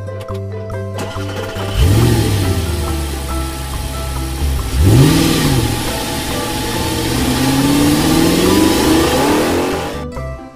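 Cartoon-style car engine sound effect over light background music: the engine starts about two seconds in, revs up and down twice, then climbs steadily in pitch as if pulling away.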